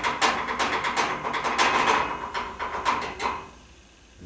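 A knife clattering and scraping on a board, a quick run of many sharp clicks and knocks that stops shortly before the end.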